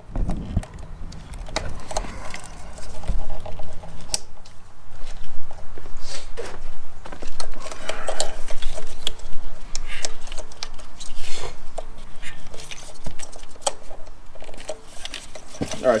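Fuel injector wiring connectors being unplugged from an engine and the harness pulled aside: a string of irregular plastic clicks, snaps and rattles of wire and connectors.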